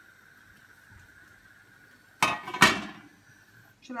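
A plate being handled, with two sharp clinks about half a second apart a little past halfway.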